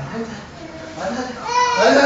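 A young child's high-pitched squeal during play, rising near the end, with an adult's voice underneath.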